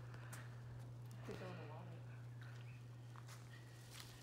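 Quiet background with a steady low hum, a faint voice briefly about a second in, and a few faint clicks.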